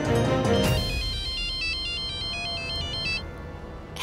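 Background score ends under a second in, followed by a mobile phone ringtone: a quick electronic melody of high, stepping beeps that stops about three seconds in.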